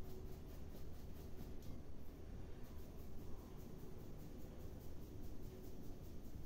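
Quiet room tone with a low steady hum, and faint sifting of flour being shaken through a small mesh strainer into a bowl.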